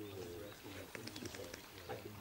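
Indistinct voices of people talking at a distance, too faint to make out words, with a few light clicks.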